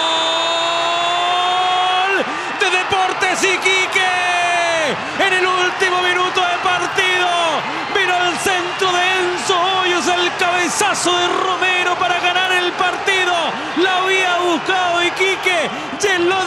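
A Spanish-language football commentator's goal cry: a long held, slightly rising "gooool" that breaks off about two seconds in, followed by rapid high-pitched shouting celebrating the winning goal.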